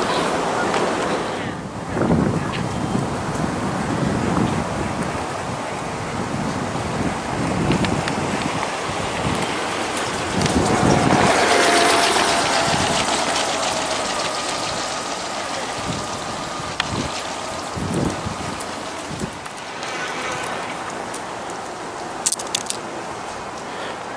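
Wind buffeting the microphone over steady outdoor background noise, swelling loudest a little past halfway.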